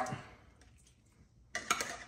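A spoon scraping and knocking inside a tin can, a short cluster of clicks near the end, as jellied cranberry sauce is dug out of the can.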